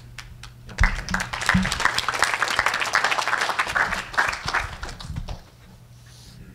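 Audience applauding, starting about a second in and dying away about five seconds in.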